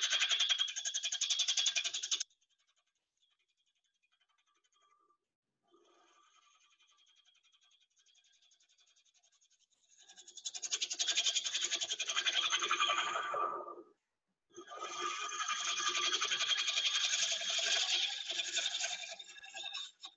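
Bowl gouge cutting across the face of a spinning wooden bowl blank on a lathe to flatten it, in three passes: a short one at the start, then two longer ones from about ten seconds in, separated by a brief pause. Each cut has a rapid, buzzy ticking, as the gouge meets a face that is not yet flat.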